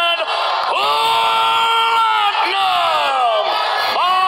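A man yelling in long, drawn-out victory cries over crowd noise. The first cry is held for about a second and a half, the next falls in pitch, and another starts right at the end.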